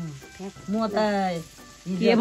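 A woman's voice: a brief sound at the start, then a longer drawn-out utterance with falling pitch from about half a second in, over a faint steady hiss.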